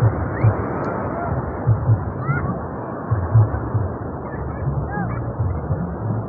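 Surf washing up the beach, a steady rushing noise, with faint distant voices of people calling now and then and low thuds here and there.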